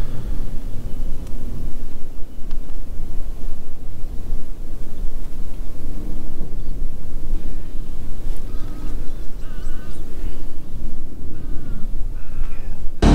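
Strong wind buffeting the microphone, a loud, gusting rumble. In the second half a bird calls several times in short, repeated calls.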